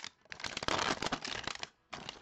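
Plastic wrapping crinkled and torn by hand as a sealed box is opened: a dense run of crackles lasting about a second and a half, stopping just before the end.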